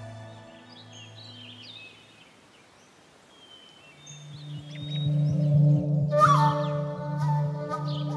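Background music fades out, leaving a quiet stretch with scattered bird chirps, then a new piece of drama score swells in with long held low notes and a sliding note near the six-second mark.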